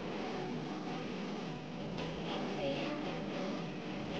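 Low, steady studio background murmur with faint voices, with no single distinct sound standing out.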